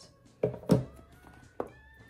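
Two thunks about a quarter second apart, the second louder, as a boxed tarot deck is set down and handled on a wooden tabletop, followed by a lighter click.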